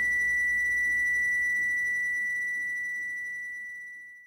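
The song's last note: a single high, pure synthesizer-like tone held steady, then slowly fading away near the end.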